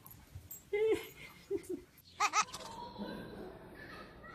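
A few short, high-pitched animal cries, the last ones wavering in pitch.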